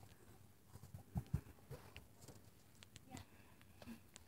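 Near silence: room tone with a few faint soft knocks and taps, two low thumps a little over a second in.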